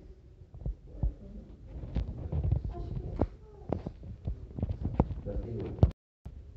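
Low rumbling handling noise with a series of sharp knocks and clicks on a tabletop, the loudest just before the end, and faint voices in the background.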